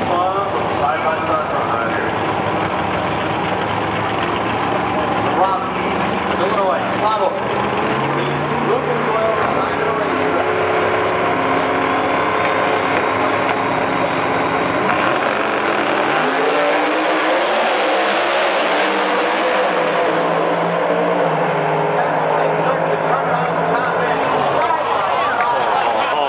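Two Outlaw 10.5 drag race cars' V8 engines running and revving at the starting line, then launching about fifteen seconds in and running at full throttle down the drag strip.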